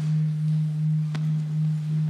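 One low note held on as the last sound of a hymn's accompaniment, most like an organ: a nearly pure, steady tone that swells and dips about twice a second. There is a single faint click about a second in.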